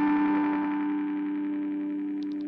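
A held note or chord ringing out through the EarthQuaker Devices Avalanche Run delay and reverb pedal, a steady sustained wash that slowly fades as the effect tail decays.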